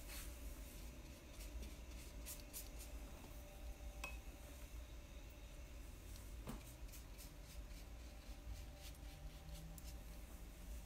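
Faint strokes of a watercolour brush on paper: a few soft, brief brushing sounds over a low steady hum.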